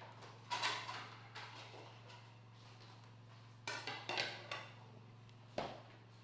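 Plates and glasses clinking and knocking as they are taken out and set down on a kitchen counter: a few separate clatters about half a second in, a cluster around four seconds in and one more near the end, over a steady low hum.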